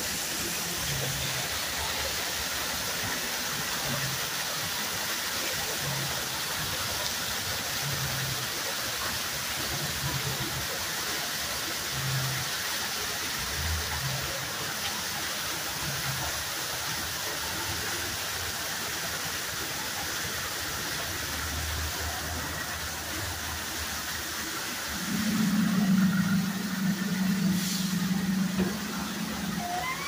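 Steady rush of falling water from the ride's artificial waterfalls, with a low hum pulsing about once a second. Near the end a louder low drone comes in and holds for about four seconds.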